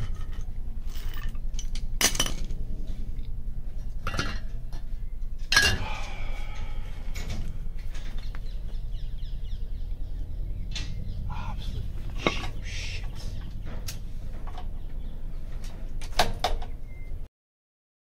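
Metal hand tools clinking and knocking against the metal parts of a Hecht 746 petrol tiller as it is taken apart: scattered sharp knocks, the loudest about five and a half seconds in, ringing briefly, over a steady low hum. The sound cuts off suddenly near the end.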